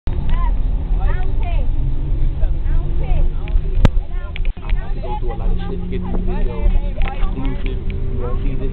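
Low rumble of a school bus engine and road noise heard from inside the cabin, under the loud chatter of several young passengers. There is one sharp click about halfway through.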